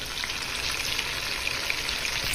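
Pieces of raw meat frying in a pot of melted butter: a steady sizzling hiss.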